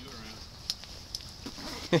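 Faint steady hiss with a few light clicks, then a person starts a short laugh right at the end.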